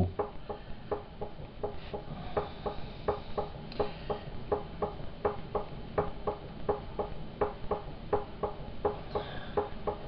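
Potter's wheel spinning while clay is thrown, with a regular click about three times a second.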